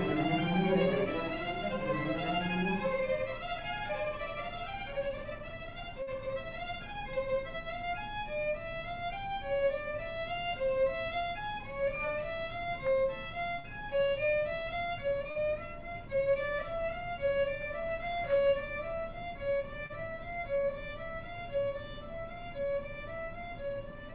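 String orchestra playing a contemporary piece. Low cello and bass notes sound for the first few seconds, then drop out, leaving violins and violas in short repeated notes that overlap in layered patterns.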